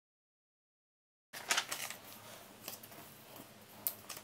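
Dead silence for about the first second, then a sheet of paper handled and folded by hand: rustling with several sharp crinkles, the loudest just after the sound begins.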